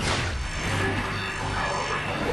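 Science-fiction sound effect of a hologram device igniting into a column of fire: a sudden rushing hiss that starts at once and holds, over a low hum and background music.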